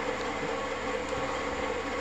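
A steady low hum and hiss of background room noise, unchanging throughout.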